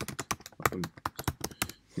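Typing on a computer keyboard: a quick, steady run of key clicks, about six or seven a second.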